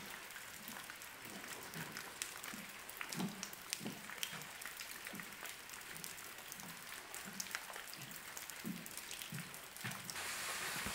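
Water drops pattering irregularly as light sharp ticks over a faint steady hiss. Soft low thuds come about twice a second in time with footsteps on a wooden boardwalk.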